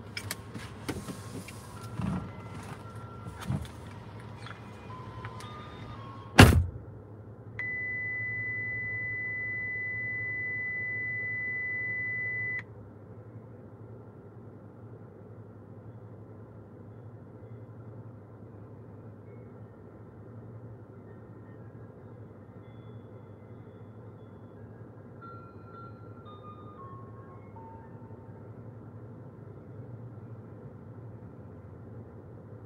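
Inside a stopped car with the engine idling: a low steady hum, a few clicks, then one loud thump about six seconds in. A steady high-pitched electronic beep follows for about five seconds and cuts off, and a few faint short falling beeps come near the end.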